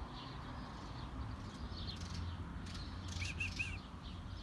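Tits chirping, short high notes with a quick run of about four chirps near the end, over a low steady rumble.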